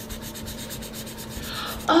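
Felt tip of a Crayola washable marker scrubbing quickly back and forth on lined notebook paper, colouring in a solid swatch: a steady scratchy rubbing.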